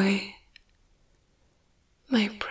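A woman's soft voice trailing off on a held word in the first moment, then near-silent room tone with one faint click about half a second in.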